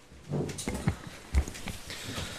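Handling noise from papers being lifted and shuffled on a desk next to a table microphone: several irregular knocks and dull thuds, the heaviest about a second and a half in.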